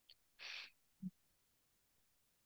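Near silence with a faint short breath-like hiss about half a second in and a brief low hum-like blip about a second in.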